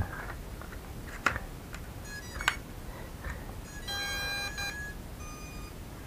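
Two light handling clicks, then an electronic beep of a little under a second about four seconds in, followed by a fainter short tone, as the MJX Bugs 3 Mini quadcopter and its already-bound transmitter are powered up.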